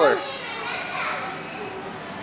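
Background din of children playing and people talking, with no one voice standing out; a voice glides down and stops right at the start.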